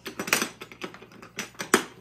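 A quick run of sharp clicks and plastic clatter from hands handling a homemade balloon pump and its cable, with the loudest click near the end. No motor runs.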